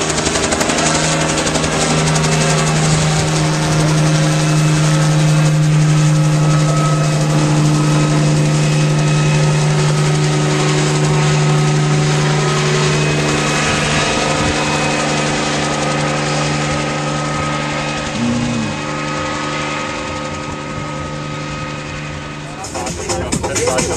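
Small helicopter flying low overhead: a loud, steady engine drone with a fast rotor-blade chop, easing off a little near the end.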